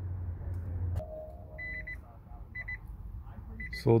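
Nissan Leaf cabin warning chime: groups of quick high beeps repeating about once a second, after a click about a second in.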